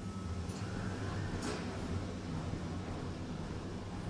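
Otis Europa 2000 lift heard from inside the car: a steady low machinery hum, with two faint clicks in the first second and a half.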